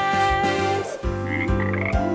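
Cartoon frog croaking, a few short croaks in the second half, over the backing music of a children's song with a steady beat.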